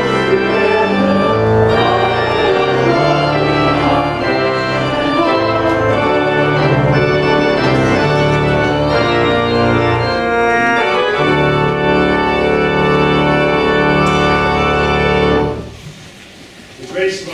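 Church organ playing a sequence of sustained chords, ending on a long held chord that cuts off about a second before the end.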